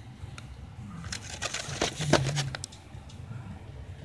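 A toy box's packaging being handled and turned close to the microphone, with a cluster of crinkles and clicks between about one and two and a half seconds in.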